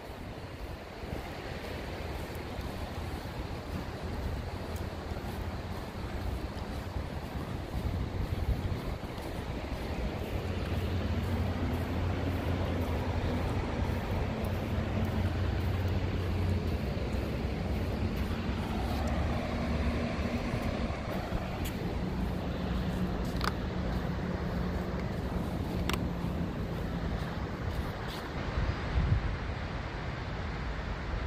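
Outdoor ambience: a low wind rumble on the microphone, joined from about ten seconds in by a faint, steady distant engine hum that lasts until near the end.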